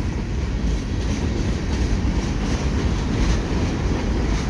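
Freight cars of a CN manifest freight rolling past over a railway bridge: a steady rumble of steel wheels on rail.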